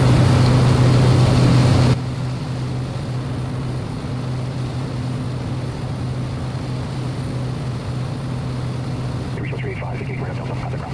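Steady drone of a Cessna Grand Caravan's turboprop engine and propeller in flight, with a low hum. A louder hiss on top cuts off abruptly about two seconds in. Faint radio voices start near the end.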